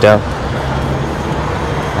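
Steady city street traffic noise, an even hum of road vehicles.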